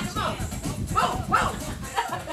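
Performers' voices calling out in short, yelp-like bursts on a small stage, with music playing underneath.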